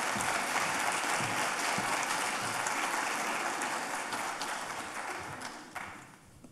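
Theater audience applauding, the applause dying away near the end.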